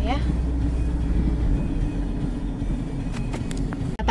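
Steady low rumble of a car driving, heard from inside the cabin: engine and road noise. A few faint clicks about three seconds in.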